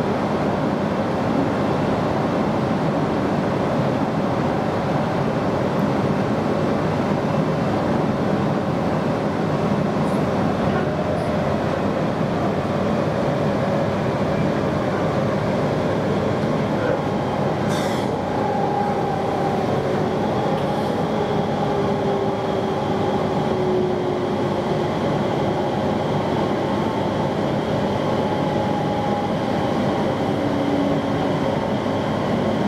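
Steady running noise inside a moving JR East Joban Line train, wheels on rail. A short sharp click comes a little past halfway, and from then on a faint whine slowly drops in pitch.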